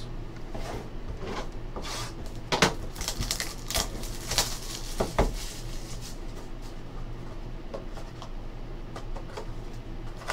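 Trading cards and a cardboard card box being handled on a tabletop: scattered light clicks, taps and rustles, the sharpest about two and a half seconds in, over a low steady hum.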